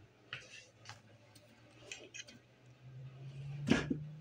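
A few light clicks and taps, then one louder knock near the end, over a low steady hum.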